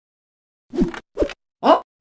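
Two quick cartoon plop sound effects about half a second apart, each dropping in pitch, followed by a short questioning "eh?" near the end.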